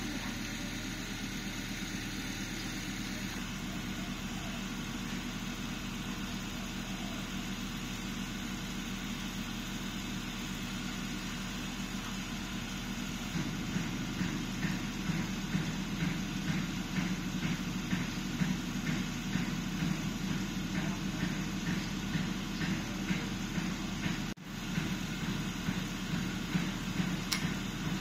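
Steady low mechanical hum throughout. From about halfway, evenly spaced clicking at about two clicks a second: a bicycle rear hub's freehub ratcheting as the freehub body is turned by hand.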